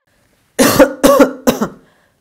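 A man coughing three times in quick succession, the coughs starting about half a second in.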